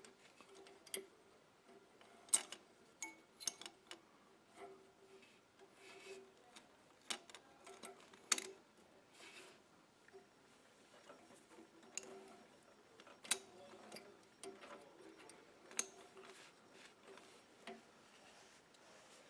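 Faint, irregular clicks and light metallic taps as a steel clutch cable and its ferrule are threaded through a bracket hole and around a pulley on a BCS two-wheel tractor. A few taps stand out louder.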